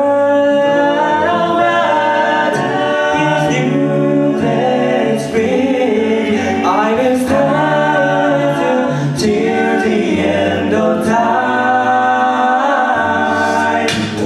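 All-male six-voice a cappella group singing close harmony into microphones, with a vocal bass line sustained underneath.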